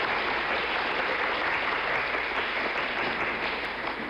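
Applause: a group of people clapping steadily, dying down a little near the end.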